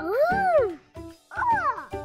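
A cartoon character's voice making two wordless sliding sounds over light background music: the first rising and then falling, the second falling near the end.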